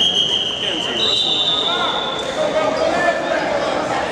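Referee's whistle blown to stop the wrestling: a shrill steady tone lasting about two seconds, with a second, higher tone joining about a second in, over voices shouting in a gym.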